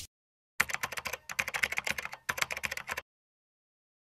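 Computer-keyboard typing sound effect: a fast, irregular run of key clicks lasting about two and a half seconds. It starts about half a second in and cuts off sharply.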